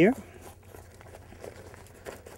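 Faint rustling and crinkling of kite leading-edge fabric as fingers handle it and press the inflate valve into place.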